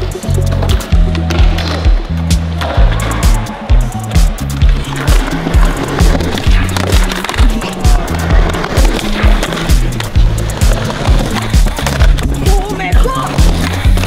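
Music track with a heavy bass beat, about two beats a second, mixed with skateboard sounds: urethane wheels rolling on concrete and the board's clacks and landings.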